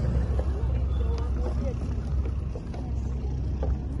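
Faint voices of people talking nearby over a steady low rumble.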